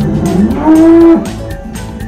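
A cow mooing once: a single call that rises, holds a steady note and breaks off about a second in.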